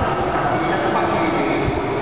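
Many voices singing a slow hymn in long held notes, sounding together in a large, echoing church.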